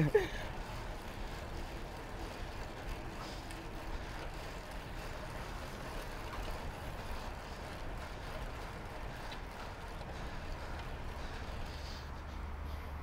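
Steady rush of wind and tyre noise while riding a fixed-gear bicycle along a paved street.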